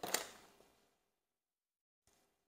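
A short, faint sniff at the very start, then silence.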